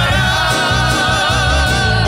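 Gospel hymn singing with instrumental accompaniment: a voice holds one long note with vibrato over a steady bass line.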